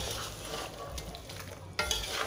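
A utensil gently stirring a chunky chicken caldereta stew of chicken, pineapple, beans, carrots, potatoes and bell pepper in a pan as it cooks with a low sizzle.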